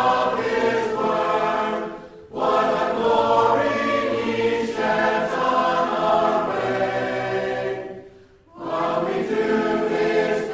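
A choir singing a hymn in long sustained phrases, with a short pause about two seconds in and another near eight seconds.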